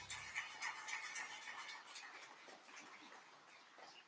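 The last of the choir and accompaniment dying away in a reverberant church sanctuary. Faint scattered clicks run through it and fade out, leaving low room tone.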